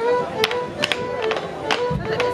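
Clog dancers' wooden clogs striking the dance board in time with a lively folk dance tune, a sharp clack roughly every half second over the held notes of the melody.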